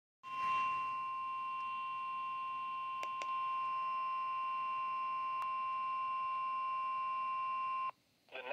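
Midland NOAA weather radio sounding the 1050 Hz warning alarm tone through its small speaker: one long steady tone that cuts off suddenly near the end, the alert that precedes a warning broadcast, here a severe thunderstorm warning. Button clicks come about three seconds in, after which the tone is a little louder, and again about five and a half seconds in.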